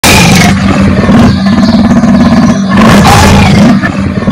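A big cat growling and snarling loudly and without a break, a harsh rasping growl.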